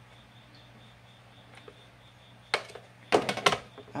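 Faint room tone with a low steady hum, then one sharp knock about two and a half seconds in and a quick cluster of louder clicks and knocks near the end as a red plastic tub and spoon are handled and the tub is set down on the counter.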